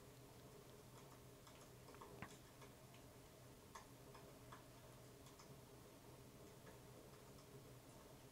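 Near silence with faint, irregular crackles and pops from a wood fire burning in a fireplace, over a low steady hum.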